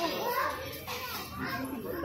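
Several people talking at once among a crowd, with a child's voice among them.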